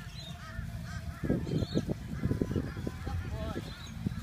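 A person laughing in a run of short, quick bursts that start about a second in and go on for a couple of seconds, amused at the pony's sneezing.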